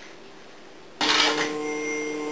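Quiet room tone, then about a second in a sudden loud sound of several steady held tones over a hiss, starting at once and holding evenly.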